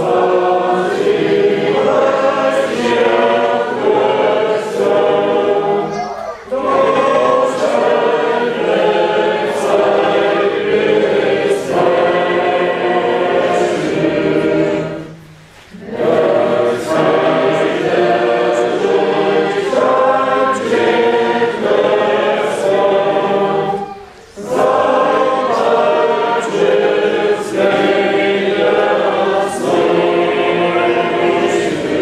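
A congregation singing a hymn together, with short breaks between the sung lines about six, fifteen and twenty-four seconds in.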